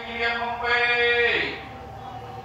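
Buddhist chanting: a single voice holds one long chanted syllable on a steady pitch, then slides down and breaks off about two-thirds of the way through.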